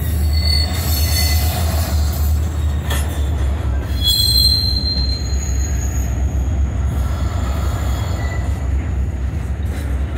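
Double-stack intermodal train of container-laden well cars rolling past close by: a steady low rumble of wheels on rail, with brief high-pitched wheel squeals about half a second in and again around four seconds in.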